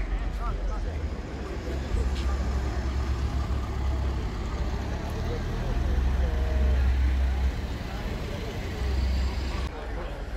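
Audi A4 Avant's engine and exhaust at low revs as the car pulls slowly past, a low drone that is loudest about six to seven and a half seconds in. Crowd chatter runs underneath.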